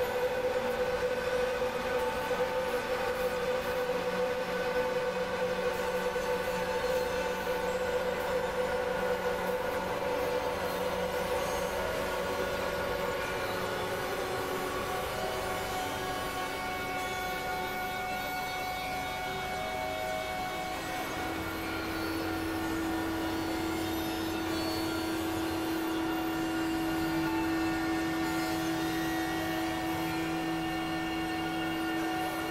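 Layered experimental synthesizer drones: several sustained tones held over a hissing, noisy bed at a steady level. A strong mid-pitched tone fades out about halfway through, and a lower tone comes in about two-thirds of the way in.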